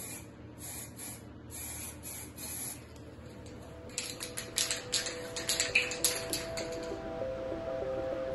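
Aerosol spray paint can hissing in several short bursts over a bicycle frame. From about four seconds in, a run of sharp clicks, with music fading in under them.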